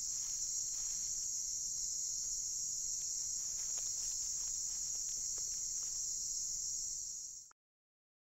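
Steady, high-pitched chorus of night insects, unbroken until it cuts off suddenly near the end.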